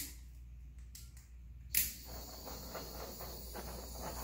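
A handheld torch clicks on just before two seconds in, then its flame gives a steady faint hiss as it is played over wet acrylic paint to bring up cells.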